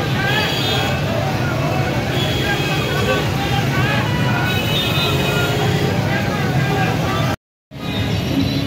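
Many voices talking at once over a steady low traffic rumble on a busy street; the sound cuts out completely for a moment near the end.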